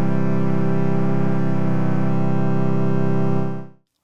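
Software granular synthesizer (Steinberg Padshop 2, MultiPulse sample, two grain streams) holding one sustained low note rich in overtones. Its tone wavers slightly midway as the duration spread setting is turned, and the note fades out shortly before the end.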